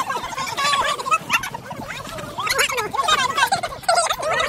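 Several people laughing and calling out at once, their voices overlapping without a break.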